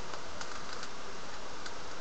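Plastic 3x3 Rubik's cube having its top layer turned twice (a U2 move): a few faint clicks of the layer turning, over a steady hiss.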